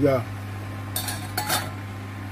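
A metal cooking pot clinking: two short clinks, about a second in and again half a second later, the second with a brief ring. A steady low hum runs underneath.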